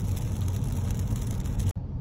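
Car cabin noise while driving at road speed: a steady low engine and tyre rumble with a hiss of road and wind noise. It cuts out for an instant near the end and then comes back.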